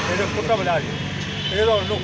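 A man speaking to the camera in short phrases, over a steady low hum of vehicle traffic.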